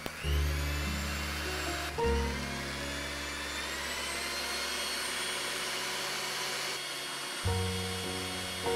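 Electric hand mixer whipping eggs and sugar in a stainless steel bowl into a pale, glossy foam. Its motor whine rises in pitch as it spins up just after a click near the start, then runs steadily under background music.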